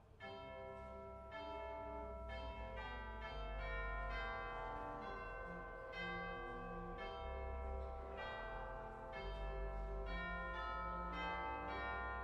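Pipe organ playing loud, sustained chords over deep held pedal notes, with a bright full registration. The chords change roughly once a second, starting sharply just after the opening.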